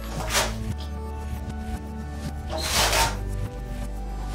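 Background music throughout, with two short scratchy rubbing noises, about half a second in and again near three seconds in (the second louder), from a wheelchair's padded backrest cushion being fitted and pressed onto its hook-and-loop backing.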